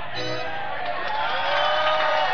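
Live keyboard solo: sustained synthesizer notes with sliding pitch bends, and a crowd starting to cheer near the end.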